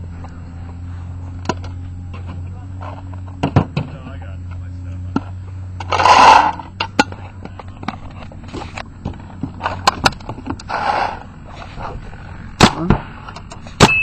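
Paintballs rattling as they are poured from a pod into the hopper, twice, among handling clicks and knocks, then two sharp shots from a Smart Parts NXT Shocker paintball marker near the end, fired over a chronograph to check velocity at about 300 fps.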